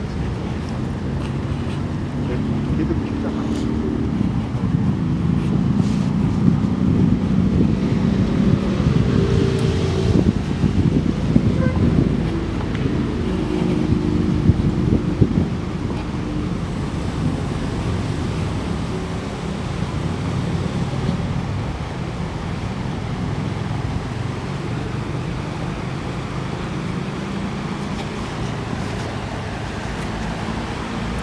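Low, continuous rumble of city road traffic with indistinct voices mixed in, swelling somewhat during the first half and then settling.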